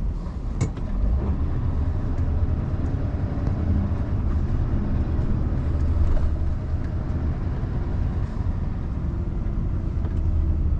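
Scania V8 diesel truck engine running steadily while driving, heard inside the cab as a low rumble mixed with road noise. A single sharp click comes about half a second in.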